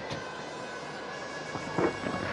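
Steady, even background noise of a cricket ground's broadcast sound, with a faint voice-like call near the end.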